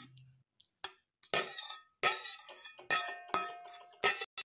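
Stainless steel spoon and plate clinking against a small steel mixer-grinder jar while cooked tomato and onion masala is pushed into it: several sharp, ringing metal clinks over the last three seconds.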